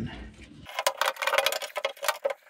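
Quick clicks and rattles of a fuel pump sending unit being worked by hand into the fuel tank's opening, parts knocking against the tank's mounting ring, starting about two-thirds of a second in.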